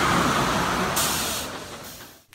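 Intro sound effect: a rushing, vehicle-like noise that fades away, with a short sharp burst of hiss about a second in.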